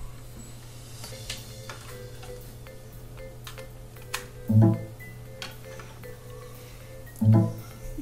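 Windows 7 device-connect chime from the PC speakers, sounding twice, about four and a half and seven seconds in: the computer has detected the newly plugged-in USB microphone. Faint clicks from the USB plug being handled lie under a steady low computer hum.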